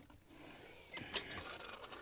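Hand cup-setting tool for a golf hole being released and lifted off a newly set plastic hole cup, giving a few faint mechanical clicks from about halfway through.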